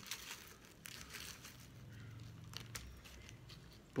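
Faint crinkling of a foil spice packet being shaken, with a few light ticks as crushed red pepper flakes fall onto raw liver in a plastic tray.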